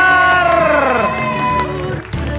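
A high voice cheering in one long shout that slides down in pitch and fades after about a second and a half, over background music.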